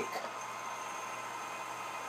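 Handheld hair dryer running steadily on its low setting: an even hiss of blown air.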